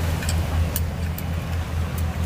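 A steady low engine hum with an even throb, with a few sharp metal clicks as the folding pot-support arms of a portable gas camping stove are handled.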